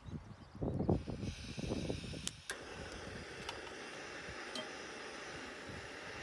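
Gas camp stove burner hissing steadily under a stainless steel pot. Gusts of wind buffet the microphone with low rumbling in the first two and a half seconds, and there are a few faint clicks.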